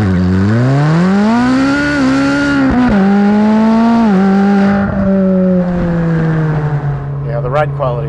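The Ferrari 458 Speciale's 4.5-litre naturally aspirated V8, heard at the exhaust tip under acceleration. The note rises in pitch, dips briefly about three seconds in, and climbs again. It drops sharply just after four seconds as the gearbox shifts up, then falls slowly as the car eases off.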